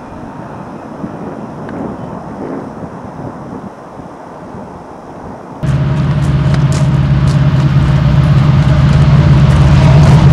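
Freight train rolling past with a low, even rumble. About halfway through it cuts off suddenly to a much louder steady low drone.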